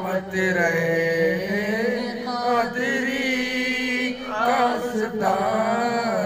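A man's voice chanting devotional zikr verses into a microphone in long, drawn-out, wavering notes over a steady low drone, with short breaths between phrases.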